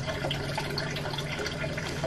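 Steady background noise with a low, even hum and no distinct events.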